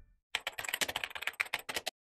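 Keyboard-typing sound effect: a quick run of sharp clicks for about a second and a half that stops abruptly.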